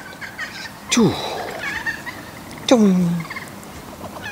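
A duck calling twice: two loud calls that fall sharply in pitch, the first short, about a second in, the second longer and trailing off low, near three seconds.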